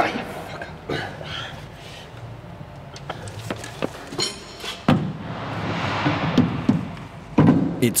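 Knocks and clunks of an aircraft mainwheel and tyre being handled and worked back onto its landing-gear axle, with a louder knock about five seconds in and a longer rushing scrape after it.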